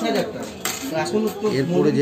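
Light metallic clinks of gold bangles being handled, with a couple of sharp clinks about two-thirds of a second and a second in, over background voices.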